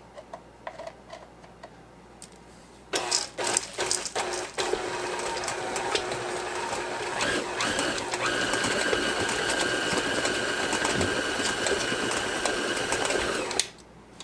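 KitchenAid stand mixer starting after a few quiet seconds, first in a few short bursts, then running steadily as its flat beater works chocolate chips into thick cookie-bar dough. A higher whine joins about halfway through, and the motor stops shortly before the end.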